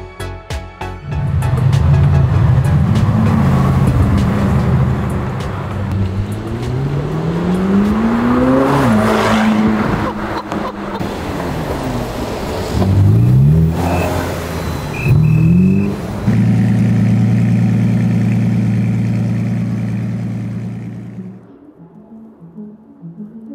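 Sports car engines accelerating on a city street, the revs rising and falling as they pull through the gears. A few quick rev blips come about two-thirds of the way through, then a steady engine drone fades out near the end.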